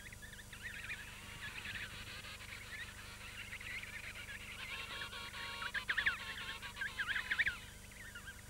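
High-pitched seabird calls, chirps and whistles, growing busier in the second half, over soft background music.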